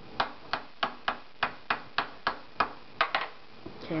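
Metal lid of a glass salsa jar being worked open by hand, giving a regular run of sharp clicks, about three a second, that stops about three seconds in.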